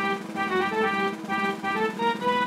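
Instrumental polka introduction with an accordion playing the tune over a steady beat.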